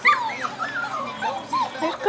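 Six-week-old Shetland sheepdog puppies whimpering and yipping: a string of short cries, each rising and falling in pitch.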